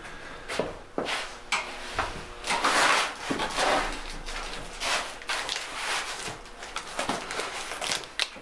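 Irregular knocks, scrapes and swishes of a person moving about and handling things off camera, with the strongest scraping about two and a half to three seconds in; most likely the potter fetching a cardboard box of clay.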